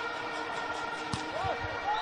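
A volleyball struck hard once, a little past a second in, over the steady noise of an arena crowd.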